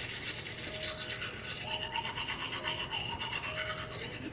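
Manual toothbrush scrubbing teeth in quick back-and-forth strokes.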